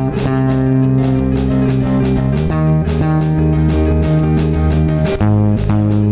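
An indie rock band plays an instrumental passage: guitar and bass guitar over drums with a steady cymbal beat. The bass note shifts twice, about two seconds in and again about five seconds in.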